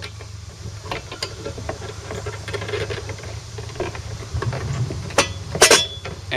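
Handling noise as a lightning arrester is fitted into the knockout hole of a metal electrical pull box: light scattered clicks and rustles, then a few sharp, louder clicks near the end. A low, steady hum runs underneath.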